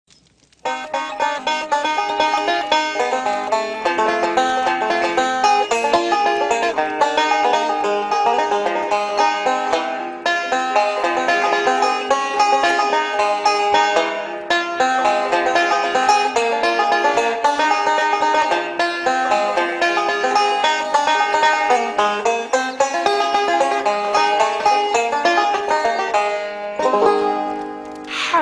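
Banjo being picked in a fast run of plucked notes, starting under a second in and tailing off near the end.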